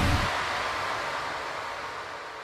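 Electronic noise sweep from a hardstyle track fading out at a break in the mix, with no kick or bass. It dies away steadily and its top end thins out, ahead of the next track.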